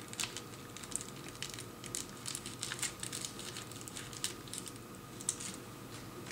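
Small clear plastic bag crinkling and rustling in the fingers as a gripper fitting is taken out, with faint, irregular light crackles and clicks.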